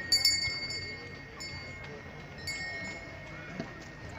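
Small metal bells ringing: a loud clash just after the start rings on for about a second, and a second, softer ring comes about two and a half seconds in, over a low crowd murmur.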